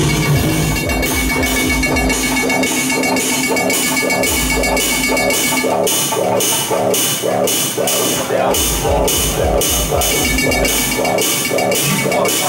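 Live electronic music played on tabletop electronics: a repeating synth pulse about three times a second over even high ticks. The low bass drops out and comes back twice.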